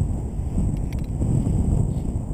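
Wind buffeting an action camera's microphone: a steady low rumble, with a few faint clicks about a second in.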